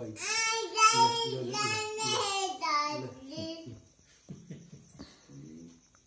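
A toddler's high-pitched, sing-song vocalizing for about three and a half seconds, then quieter voice sounds. A faint steady high whine runs underneath.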